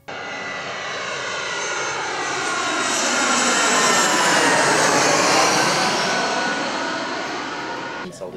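Jet airliner flying past: the engine roar starts suddenly, swells to a peak about halfway through and then fades, its pitch dropping as it passes.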